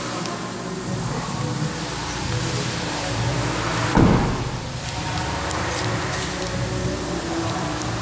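A car door is shut with a single thud about halfway through, over a steady low hum.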